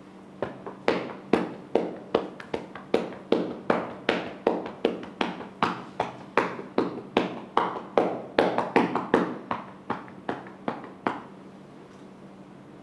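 Rhythmic tapotement massage: hands patting a client's back through a blanket, about two to three pats a second, which stops about eleven seconds in.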